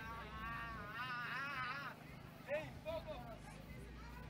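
A man's voice talking, with drawn-out phrases in the first half and a few short syllables in the middle, over a faint low hum.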